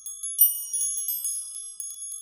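Tinkling chime sound effect: a quick run of high, bell-like notes, each ringing on and overlapping the next, thinning out near the end.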